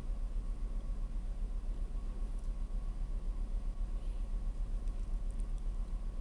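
Steady low machinery hum with a fast, even pulse in its loudness and no distinct events.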